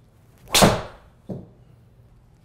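PING G410 LST titanium driver head striking a teed golf ball on a full swing: one loud, sharp crack of impact about half a second in that trails off quickly, followed by a softer thud under a second later.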